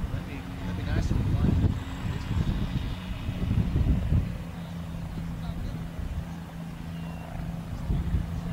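Legal Eagle ultralight's four-stroke Generac V-twin engine droning steadily in flight at a distance.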